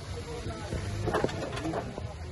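Voices talking in the background, with a few short clicks from a small metal tin box as its hinged lid is opened about a second in.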